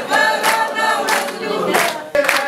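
A group of people singing together in unison, with hand claps keeping time about every two-thirds of a second.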